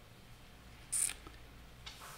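A pause in a quiet room, with a low steady hum. About a second in comes one short, sharp hiss, and near the end a faint tick.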